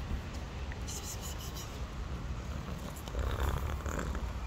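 Domestic cat purring close up while being stroked, a steady low rumble, with brief rustling about a second in.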